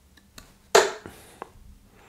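A steel-tip tungsten dart striking a bristle dartboard: one sharp thud about three-quarters of a second in, followed by a fainter click a little later.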